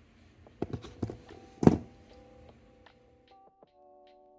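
A few sharp thumps and knocks, the loudest just under two seconds in. Light background music with plucked notes comes in partway through and carries on.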